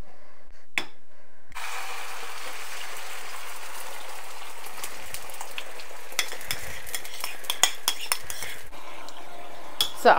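Egg and potato mixture for a Spanish omelette sizzling in hot oil in a frying pan, the sizzle starting abruptly about a second and a half in. In the second half a metal spoon clicks and scrapes against the bowl many times as the mixture is poured and pushed out.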